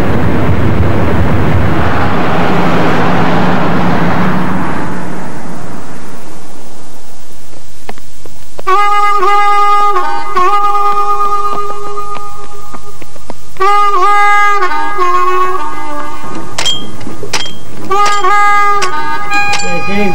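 Wind and road noise rushing past an open car on the move, dying away over the first several seconds. From about eight seconds in, a music melody of long held notes that scoop up at their starts, played in phrases with short pauses between them.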